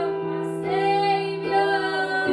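Women singing a worship song together, with sustained electronic keyboard chords held steady underneath.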